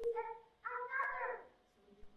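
High-pitched whimpering cries from a voice: a short cry at the start, then a longer one that slides down in pitch, like a small creature crying.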